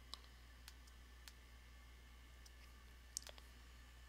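Near silence with a few faint computer mouse clicks, the sharpest about three seconds in, over a low steady hum.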